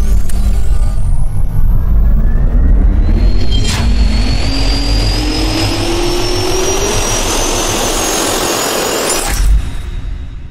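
Sound-designed intro effect of a jet turbine spooling up: a loud rumble with a whine that rises steadily in pitch, a sharp click about four seconds in, and an abrupt cut-off shortly before the end.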